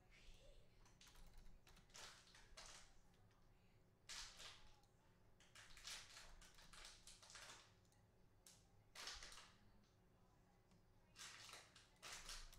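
Near silence, broken by faint, irregular clicks and taps of a computer keyboard being typed on.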